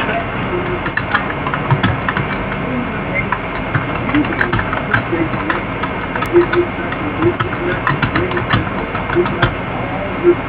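Faint, muffled speech-like voice fragments and scattered clicks buried in a steady hiss on a low-quality recording.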